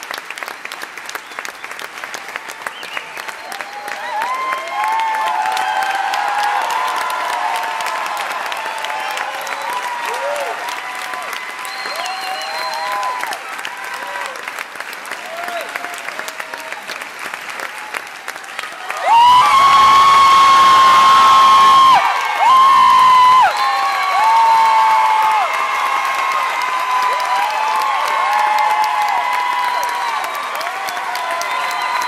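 Theatre audience applauding steadily, with many high-pitched cheers and screams from fans over the clapping. About 19 seconds in, one voice close by screams loudly and holds it for about three seconds, followed by a shorter loud scream.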